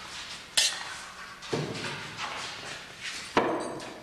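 Knocks and clatter of household objects being handled: a sharp knock about half a second in, a duller thump around a second and a half, and another sharp knock a little after three seconds.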